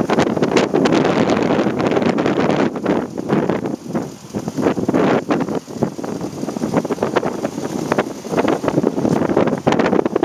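Wind buffeting the microphone in loud, irregular gusts that rise and fall, with dips around four and six seconds in.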